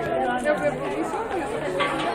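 Indistinct chatter of several overlapping voices in a busy clothing shop, with no single voice standing out.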